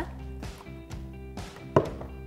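Background music, with a single sharp knock near the end as a plastic steriliser lid is set down on a wooden table.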